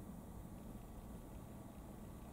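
Near silence: faint steady room tone.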